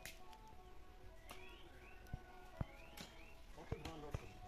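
Faint outdoor quiet with a bird repeating a short rising whistled call about three times, and a few scattered soft knocks.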